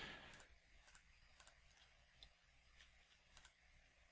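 Faint computer mouse clicks, about half a dozen at irregular intervals, in near silence.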